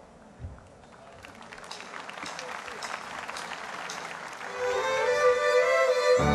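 Large crowd applauding, growing louder over the first few seconds. About four and a half seconds in, the orchestra's strings come in with a held note as the song begins.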